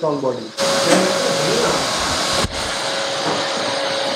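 A loud, steady rush of noise from an electric blower-type appliance, starting about half a second in after a few spoken words, breaking off for an instant about two and a half seconds in, then carrying on.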